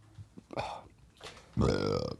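A person burping: one loud, deep burp lasting about half a second near the end.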